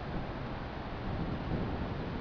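Steady low rumble and hiss of wind on the camcorder microphone, with no distinct events.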